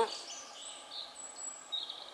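Faint woodland ambience with small birds calling in the distance: a few thin, high chirps and short high whistles over a quiet background hiss.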